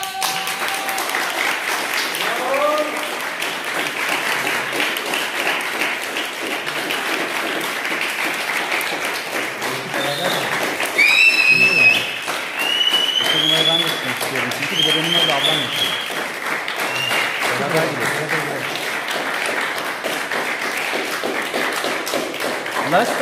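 A group applauding steadily, with a few high whoops and whistles of cheering about halfway through.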